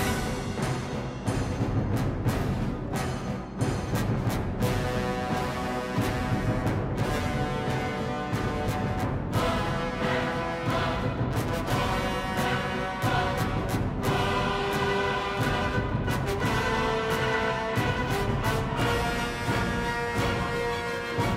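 Dramatic orchestral soundtrack music with heavy drum hits.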